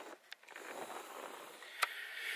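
Handheld camcorder-style vlog camera's own mechanical noise as it is handled and zoomed: a couple of sharp clicks and a faint whir, then another click near the end. The built-in mic picks up this noise whenever the zoom is used.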